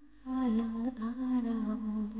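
A woman humming a slow wordless melody in long held notes with small pitch bends. It starts about a quarter second in, after a short pause between phrases.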